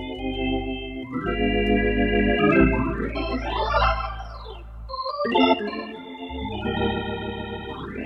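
KeyB organ, a Hammond B3-style tonewheel clone, playing slow held chords over low bass notes, with a quick run that climbs high and falls back near the middle.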